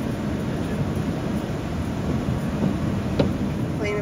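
Steady road and tyre rumble inside a moving car's cabin on wet pavement, with a light click about three seconds in.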